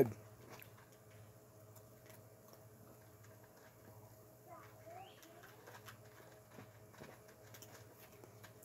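A faint dove cooing once, about halfway through, over quiet outdoor ambience with a low steady hum.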